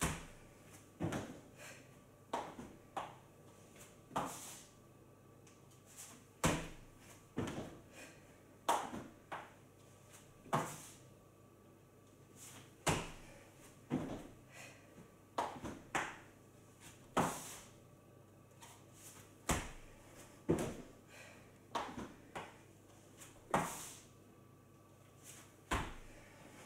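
Thuds of hands and feet on a wooden floor during repeated burpees with a push-up and a jump onto a raised support: a cluster of several knocks and landings about every six and a half seconds, each cycle with one brief hissing burst.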